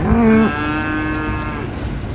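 A cow mooing: one long call that steps up in pitch about half a second in and stops shortly before the end, with a low rumble underneath.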